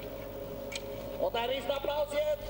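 Faint background with a steady hum, then a person's voice speaking in the second half.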